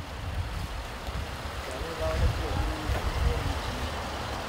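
A Range Rover SUV idling close by, under a heavy, uneven rumble of wind on the microphone, with faint voices in the background.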